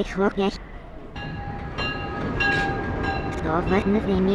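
Commuter train arriving at a station: a rumble with a steady high-pitched tone held over it for about two seconds.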